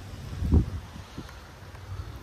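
Wind rumbling on the microphone, with a dull thump about half a second in and a fainter one a little after a second.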